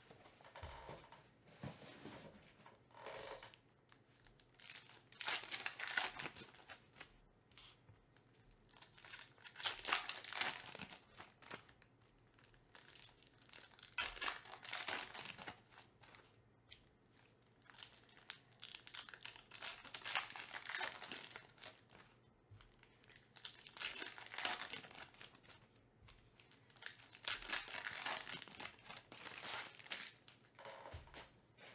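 Foil trading-card pack wrappers being torn open and crinkled by hand, in repeated bursts about every four to five seconds, with fainter rustling between.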